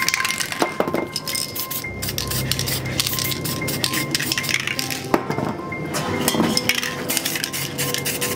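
Background music with many short, sharp clicks throughout.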